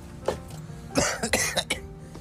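A man coughing, a quick run of a few coughs about a second in, over faint background music.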